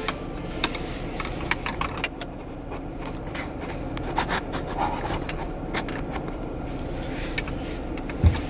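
Clicks, scrapes and jangling from things being handled close to the microphone inside a car, over a steady low hum of the car's cabin.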